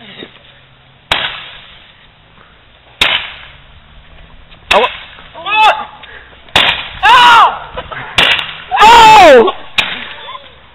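Roman candles firing, about six sharp pops spaced a second or two apart, each fading quickly. Loud yells and whoops come between the shots, the loudest near the end.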